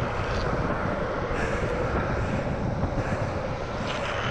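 Steady rushing noise of a fast downhill longboard run: wind buffeting the rider's microphone mixed with the roll of the urethane wheels on asphalt, with no slide or impact standing out.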